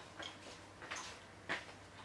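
A few faint, short clicks, about half a second apart, the clearest one about one and a half seconds in.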